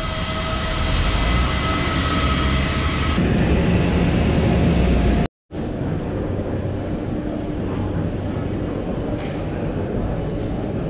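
Steady whine of a parked airliner on the apron, several level tones over a low rumble. About five seconds in it cuts off abruptly, and an even, duller noise with a low hum from a large terminal hall follows.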